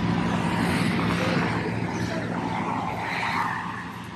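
Highway traffic passing close by: the tyre and engine noise of passing vehicles, dying away near the end.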